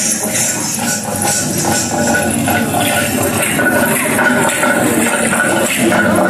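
Jingling, rattling percussion with dance music dies away about halfway through, leaving a hall full of people talking.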